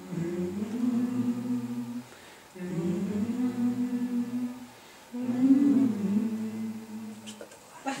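Low voices humming a hummed accompaniment in three long sustained phrases of about two seconds each, with short gaps between them.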